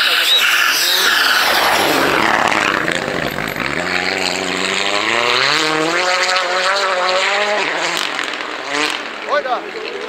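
A rally car passing at speed on a snow-covered stage: loud as it goes by over the first few seconds, then its engine note climbing as it accelerates away, breaking off and fading near the end.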